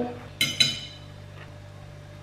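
Two brief, light clinks about half a second in, followed by a low steady room hum.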